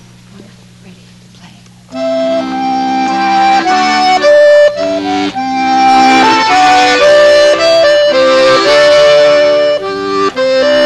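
Two accordions playing a duet: after a pause of about two seconds they come back in together with held chords under a melody that moves from note to note. A low steady hum fills the pause.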